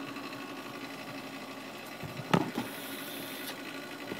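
Hot-air desoldering station running with a steady motor whir as it heats up after being switched on, with a single knock a little past two seconds in.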